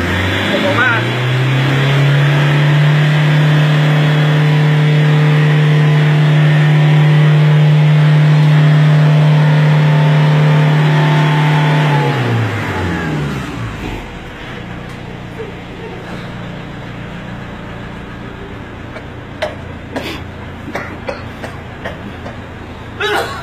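Car engine revved up from idle and held at high revs, heard close to the tailpipe. After about ten seconds it drops back to a steady idle, with a few sharp clicks near the end.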